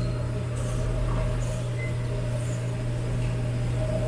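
A person slurping noodles from a bowl, short hissing slurps about once a second, over a steady low machine hum.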